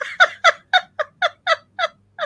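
A woman laughing hard in a rapid run of short staccato bursts, about four a second.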